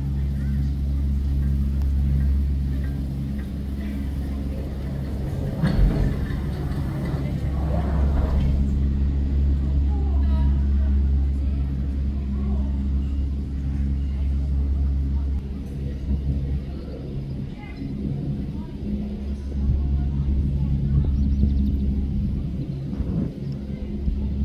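Gondola lift station's drive machinery running with a steady low hum and droning tones that cut in and out, with people talking in the background.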